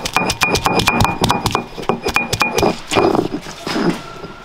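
A stone roller pounds garlic cloves and ginger on a flat stone grinding slab. It makes rapid stone-on-stone knocks, about six a second, each with a short ring. Near the end the knocks give way to a few rough rubbing strokes as the crushed mass is ground into a paste.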